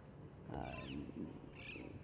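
Faint animal calls: a few short, high chirping calls, one group about half a second in and another near the end, over a low background hum.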